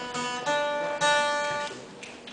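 Acoustic guitar plucked three times about half a second apart, the notes ringing on and fading away near the end.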